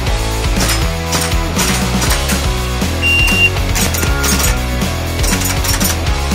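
GHK AK74U gas blowback airsoft rifle firing in short runs of sharp, clacking shots as the bolt cycles. Rock music with a steady beat plays underneath.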